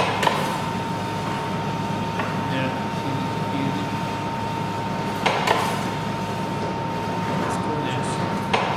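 A few light metallic clinks from hands working around a hand-cranked flywheel meat slicer and its tray: one just after the start, and a couple more about five seconds in. They sit over a steady background hum.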